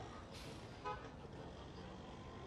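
Low, steady street traffic rumble with a short hiss about half a second in, then a very brief car-horn toot just before the one-second mark, the loudest sound.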